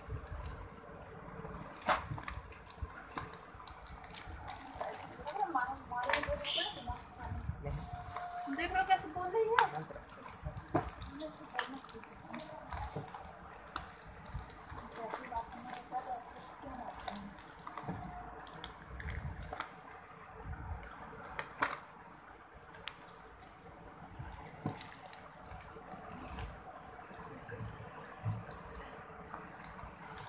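Plastic packaging and a foam wrapping sheet rustling and crinkling as they are handled, with scattered clicks and taps.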